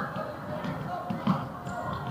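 A few soft thuds of a futsal ball and players' feet on a wooden indoor court, with voices in the background.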